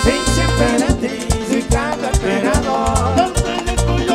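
Live merengue band playing: drums and bass keep a steady, driving beat under melody lines.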